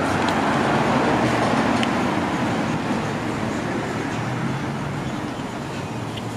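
Street traffic noise, the rumble of a passing motor vehicle with tyre noise, slowly fading.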